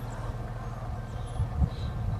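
Steady low hum of an idling vehicle engine, with a few low thumps about a second and a half in.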